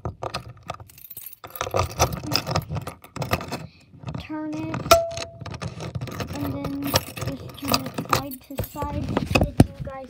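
Keys jangling, with repeated sharp clicks and rattles, as a key is handled and worked at a Fire-Lite BG-8 fire alarm pull station.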